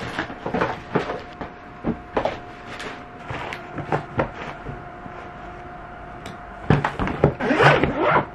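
Packing a hard-shell suitcase: clothes and items handled and set inside with scattered soft knocks and rustles. Near the end the case is closed and zipped, the loudest part.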